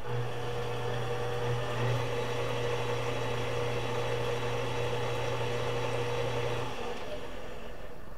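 KitchenAid stand mixer's motor running steadily at medium speed, beating dough with the paddle attachment. It stops about seven seconds in, once the dough is combined.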